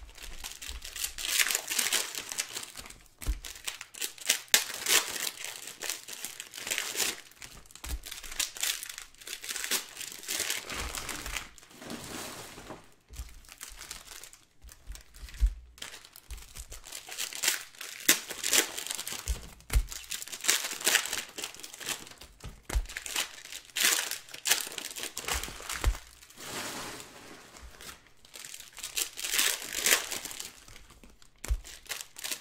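Crinkling of crumpled plastic wrapping handled close to the microphone, in irregular bursts with short pauses and a few soft bumps against the table.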